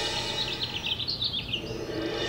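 Songbirds chirping: a quick string of short high chirps over a low background haze, stopping shortly before the end.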